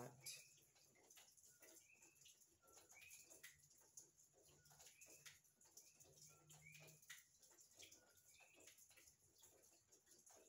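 Faint, repeated two-note chirps, a short lower note and a higher upswept note, recurring about once a second: the night calls of coqui frogs. Soft clicks of a deck of tarot cards being shuffled by hand sound underneath.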